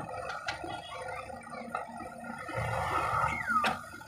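JCB 3DX backhoe loader's diesel engine and hydraulics working under load as the backhoe bucket digs and lifts a load of soil. It grows louder for about a second near the end, with a falling whine and a sharp knock before it eases.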